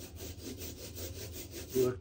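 A 4-inch Speedball rubber brayer rolled back and forth over wet acrylic gel medium on a gesso panel, a steady rubbing sound with a fast, even pulse.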